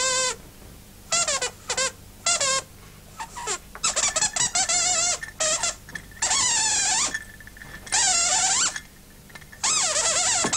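The squeaker 'voice' of Sweep, the Sooty Show glove-puppet dog: a run of shrill squeaks with wobbling, bending pitch, short bursts at first, then longer held squeals in the second half.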